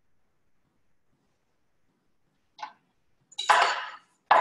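Near silence, then a chef's knife on a wooden cutting board: a light tap about two and a half seconds in, and loud chopping of fresh parsley from about three and a half seconds in.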